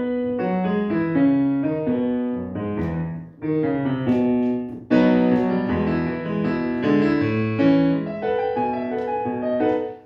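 Digital piano playing a melody over chords in phrases with brief breaks, dying away just before the end. The notes come through a small add-on box whose algorithm keeps the keys that are pressed to a melody chosen from its list.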